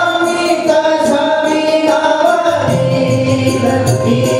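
Devotional group singing, several voices together, with a rhythmic percussion accompaniment.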